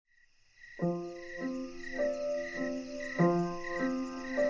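Solo piano playing a slow repeating broken-chord figure, a new note about every 0.6 s, starting just under a second in. Under it a cricket chirps steadily, about twice a second.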